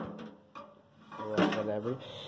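A short lull in talk: faint handling noise, then a brief hesitant voiced sound from a person about two-thirds of the way through.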